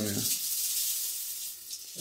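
Dried herbs burning and being stirred in a small metal pan, giving a steady sizzling hiss with faint crackle.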